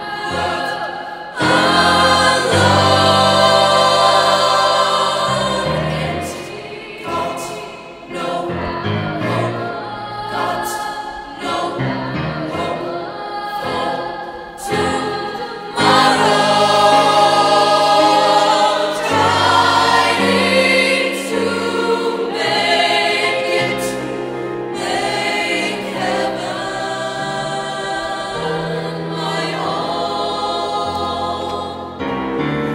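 Mixed choir of young voices singing in harmony, with sudden full, loud entries about a second and a half in and again about sixteen seconds in.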